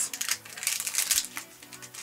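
Pokémon trading cards and their plastic or foil wrapping rustling and crinkling as they are handled, dying away after about a second and a half, with background music.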